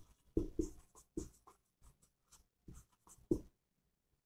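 Marker writing on a whiteboard: a series of short, irregular strokes as figures are written, with brief quiet gaps between them.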